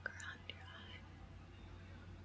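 Quiet whispering close to a microphone, with a few soft clicks in the first half-second.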